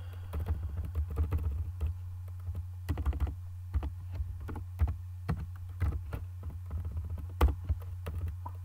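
Typing on a computer keyboard: irregular key clicks, singly and in short quick runs, over a steady low hum.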